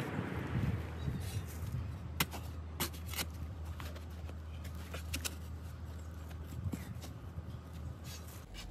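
Steel spade digging into garden soil: a scraping rush of earth at the start, then a few sharp clicks, over a low steady hum.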